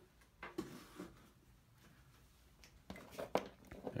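Light handling sounds on a desk: a couple of faint taps in the first second, then a short cluster of clicks and rustles near the end as a plastic plug-in power adapter and its cord are picked up.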